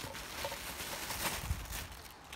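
Thin plastic bag rustling and crinkling as hands pull a packet out of it, with a soft bump about one and a half seconds in.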